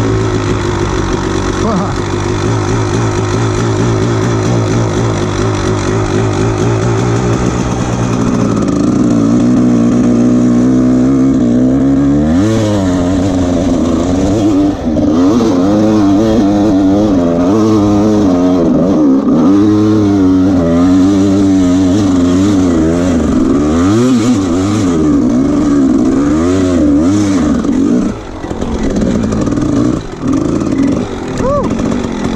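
Dirt bike engine idling steadily for the first several seconds, then revving up and down over and over as the bike is ridden, with a brief drop in level near the end.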